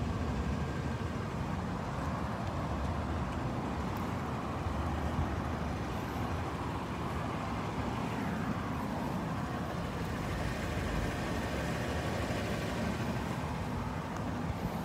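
Steady outdoor traffic noise, a low even rumble of vehicles, with a faint falling tone from a passing vehicle around the middle.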